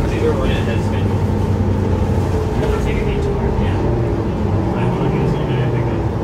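Cabin noise of a Mercedes-Benz O530 Citaro bus under way: the steady low drone of its OM906hLA inline-six diesel and Voith automatic gearbox, with road noise. Passengers chat faintly in the background.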